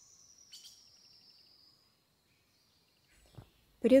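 A faint, thin high whistle that slowly falls in pitch over about two seconds, with a few soft ticks, then near silence until speech begins at the very end.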